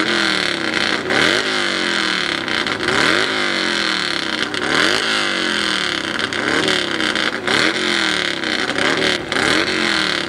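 Hillclimb motorcycle engine running at the start line and revved in repeated throttle blips, about one a second, each rising sharply in pitch and dropping back.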